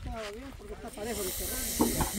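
Faint talk of people's voices, with a short, high hiss about a second in that lasts under a second.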